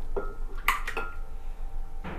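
Eggs cracked and dropped into a glass blender jar: three sharp clinks, the second the loudest, each leaving the glass ringing briefly.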